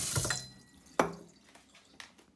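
Kitchen tap running hot water into a stainless steel sink, cutting off about half a second in, followed by a single sharp knock about a second in, like a cup or measuring cup set down on the counter.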